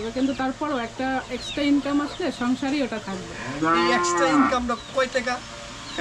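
One long animal call about three and a half seconds in, rising and then falling in pitch, among shorter broken calls earlier on.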